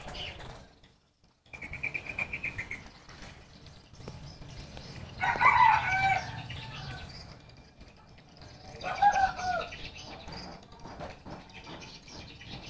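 Birds calling: a short rapid chirping trill about a second and a half in, then two longer calls that bend up and down in pitch. The louder of the two comes about five seconds in and the other near nine seconds.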